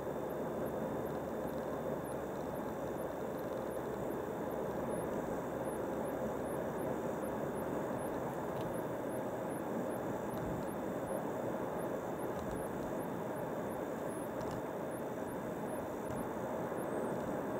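Steady road noise of a car cruising on a highway, heard from inside the cabin: tyres on asphalt and the running engine, holding an even level.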